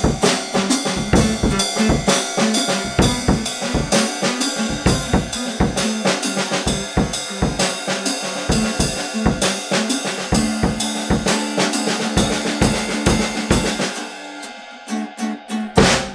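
A drum kit played in a steady groove, kick and snare hitting several times a second, with an acoustic guitar playing along. The playing thins out near the end and finishes on one last hit.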